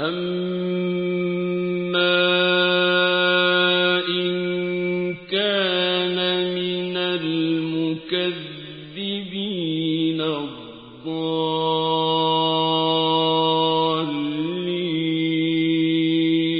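A male reciter's voice chanting Quranic verse in the melodic mujawwad style. He holds long drawn-out notes, with wavering, gliding ornaments in the middle and a brief dip about ten seconds in, then sustains a final long note.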